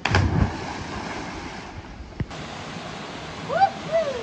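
A loud splash as a person plunges into the water, followed by steady rushing water noise.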